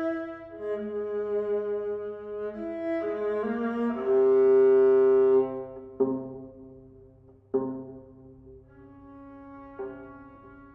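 Chamber trio of clarinet, viola and piano playing contemporary classical music: overlapping held notes build to one loud sustained note that breaks off about five and a half seconds in, followed by two sharp accented attacks and quieter held tones.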